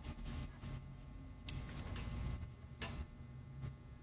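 A few faint metallic clicks of a leash snap hook being worked at a dog's chain collar and tab, three sharper ones about a second apart, over low room hum.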